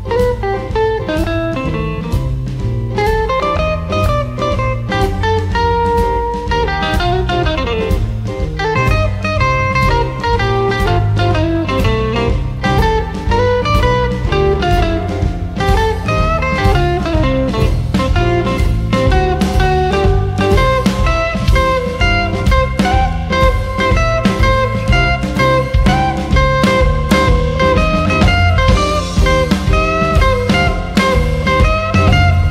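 Electric blues band playing an instrumental passage of a blues shuffle: a lead guitar line over drums and bass.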